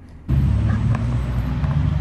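Street noise: a steady low rumble of road traffic that cuts in suddenly about a quarter second in.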